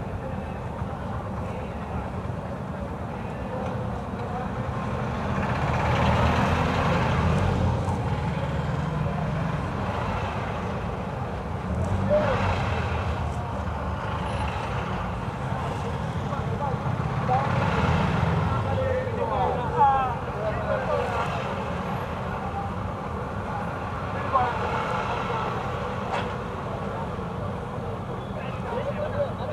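City street traffic heard from inside a vehicle: a steady low engine rumble that swells and eases as traffic moves. Background voices come and go, busiest a little past the middle.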